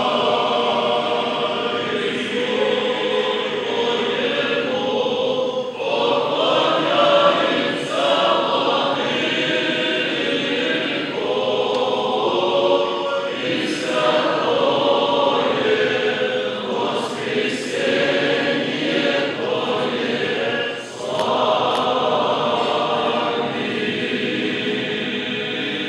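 Orthodox church choir singing a liturgical chant unaccompanied, in long sustained phrases with brief breaks between them.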